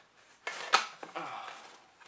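A battery module scraping out of a tightly packed cardboard box, with one sharp knock under a second in as it comes free.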